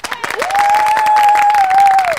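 An audience of women clapping, dense and steady, with one long high note rising about half a second in and held over the clapping until the end.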